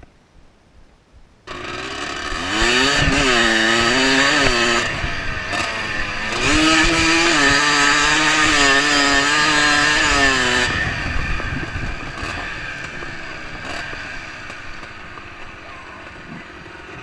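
Enduro dirt bike engine heard close up from the bike, starting suddenly about a second and a half in and pulling hard: its pitch climbs, dips briefly, then climbs again and holds. About ten seconds in the throttle closes and the engine sound drops and fades away.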